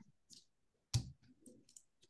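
A single sharp click about a second in, with a few faint ticks around it.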